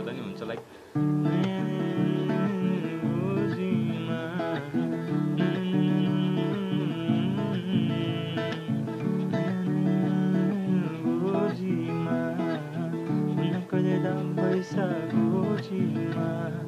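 Steel-string acoustic guitar with a capo on the second fret, strummed in a steady rhythm through chord changes, starting about a second in after a brief pause.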